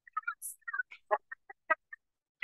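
Soft laughter, a string of short chuckles at about five a second.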